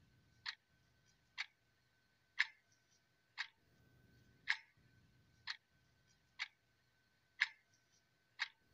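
Clock ticking steadily, about one tick a second, with a faint steady high whine behind it.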